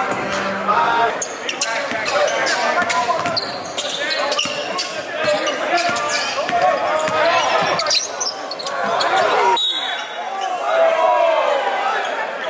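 Live court sound of a basketball game: a basketball bouncing on the hardwood floor in repeated sharp impacts, among the voices of players and spectators.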